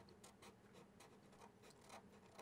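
Near silence, with the faint scratch of a Sharpie marker drawing strokes on paper.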